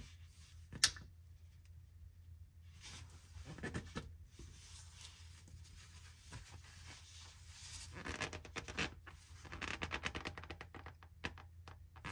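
Faint scratchy rubbing of hands and a towel working on an Allison 1000 transmission's external spin-on filter as it is hand-tightened onto its housing, with a sharp click about a second in and bursts of quick scraping later on.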